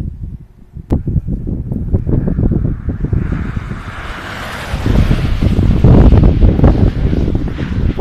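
Wind buffeting the microphone in gusts, growing louder through the second half, with a rushing hiss swelling in the middle. A single sharp click comes about a second in.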